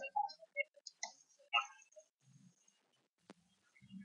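Quiet room tone with a few faint short clicks and blips, and one sharper click about three seconds in.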